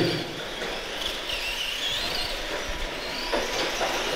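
Electric RC cars running on a turf track: a faint wavering motor and gear whine over a steady noise, with a few light clicks a little after three seconds.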